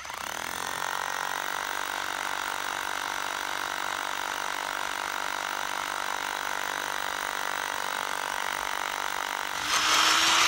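Bosch hammer drill with a core bit running steadily as it bores a two-inch hole through a concrete curb, nearly through. Just before the end the sound turns louder and rougher.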